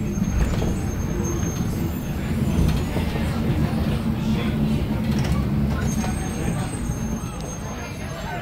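Steady low rumble of a monorail train running along its elevated beam, heard from inside the cab.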